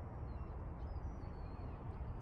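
Outdoor ambience with a steady low rumble and a few faint, short high bird chirps in the first second or so.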